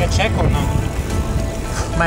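Background music with steady held notes, a voice heard briefly in the first half second, over a continuous low rumble.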